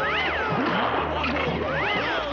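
A high-pitched cartoon-style wailing cry, rising and then falling in pitch twice, once at the start and again near the end, over background music.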